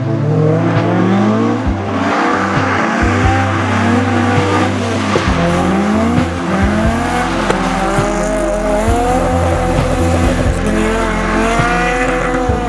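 Toyota AE86 Trueno's naturally aspirated 20-valve 4A-GE four-cylinder engine revving hard, its pitch climbing again and again in repeated rising sweeps as the car is driven.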